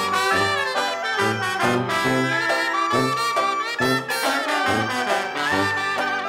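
Traditional jazz band playing an instrumental chorus: trombone and other horns over a bass line that steps about twice a second.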